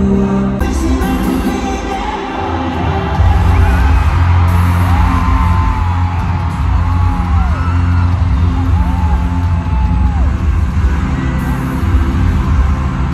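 Live stadium concert music recorded from the stands, with a heavy bass that comes in louder about three seconds in, and fans whooping and screaming over it.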